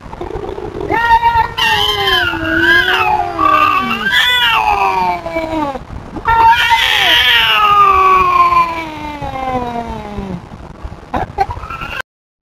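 A cat yowling in a territorial stand-off with an intruding cat: two long drawn-out yowls, the first wavering up and down in pitch, the second sliding slowly downward.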